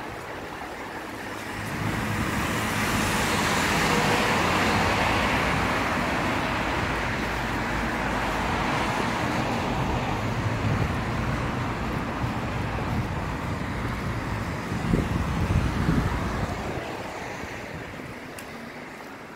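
Road traffic on a wet city road: vehicles passing with tyre hiss and engine rumble. It swells a couple of seconds in, rises again with a heavier low rumble about three-quarters of the way through, then eases off near the end.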